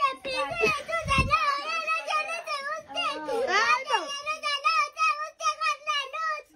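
A high-pitched voice talking rapidly without pause, with a brief low thump about a second in.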